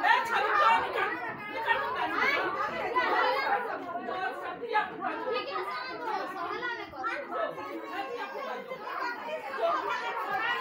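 Several people talking at once: continuous, overlapping chatter with no single clear voice.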